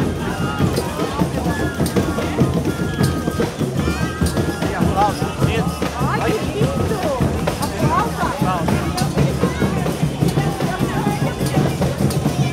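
Folia de Reis music with a drumbeat, mixed with crowd chatter and voices.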